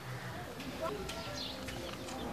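Quiet outdoor background with faint distant voices and a few short high chirps.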